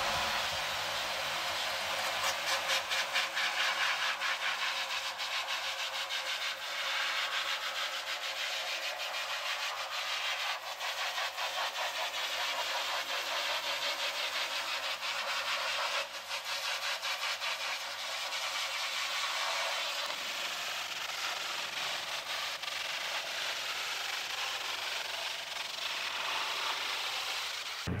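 Narrow water jet from a pressure-washer wand spraying a metal filter screen, a steady hiss as it blasts built-up ink sludge and growth off the mesh.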